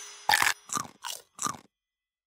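Cartoon sound effect of biting into and chewing a crunchy cookie: four quick munches, each a little apart, then silence.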